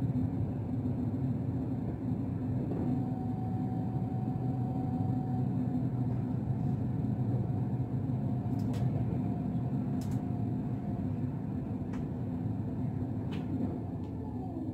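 Inside a VR Intercity passenger carriage running on the rails: a steady low rumble, with a faint steady whine from about three seconds in and a few light clicks in the second half.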